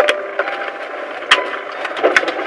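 Sharp clicks, one right at the start and another about a second and a quarter in, over a steady hiss of background noise.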